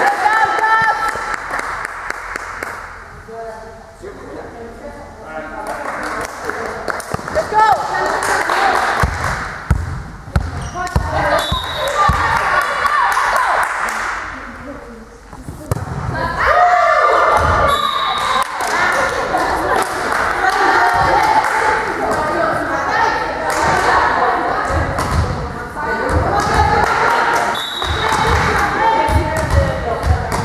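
Volleyball being played in a sports hall: players shout calls, and the ball thuds off hands and the hard floor in bursts, all echoing in the large hall.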